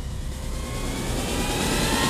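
A dramatic sound-effect riser: a low rumble under a swelling whoosh whose pitch climbs steadily, building toward a hit.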